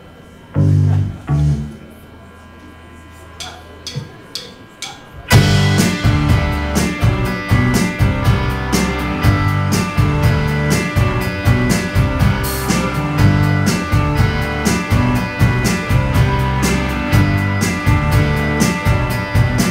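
Live indie rock band with electric guitars, bass guitar and drums. After two low thuds about half a second in and a few sharp clicks like a drumstick count-in, the full band starts the song at about five seconds and plays on at a steady beat.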